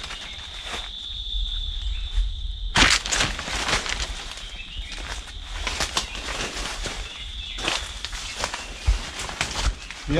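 Footsteps and rustling through leafy undergrowth, with a loud brush or crunch about three seconds in. A steady thin high-pitched tone runs underneath and stops near the end.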